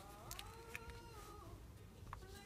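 A cat meowing faintly: one drawn-out call of about a second and a half that rises in pitch, holds, then falls away. A few faint taps of paper cutouts being handled on a table.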